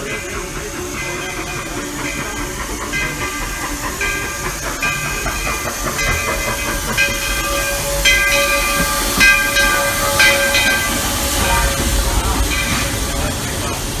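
Baldwin 4-4-0 steam locomotive arriving at a station, its bell ringing steadily about one and a half strokes a second. Steam hiss and the rumble of the engine grow louder in the second half as it draws alongside.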